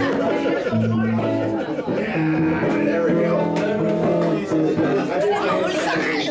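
Live rock band playing: electric guitar and bass holding long notes, with drums and a few sharp hits.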